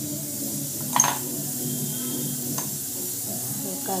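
A sharp clink against a steel mixing bowl about a second in, then a lighter tick, as salt is added to flour. Under it runs a steady background hiss.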